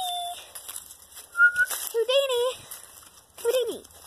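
A girl's voice making short wordless calls and coos to a pet dog, with a brief high whistle about a second and a half in.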